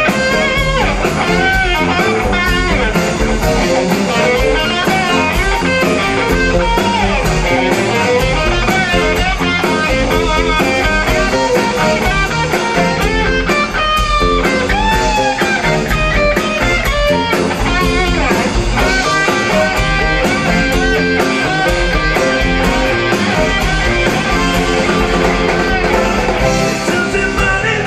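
Live rock band playing an instrumental passage with no singing: an electric guitar plays a lead line with bent notes over drums, bass guitar and Hammond organ.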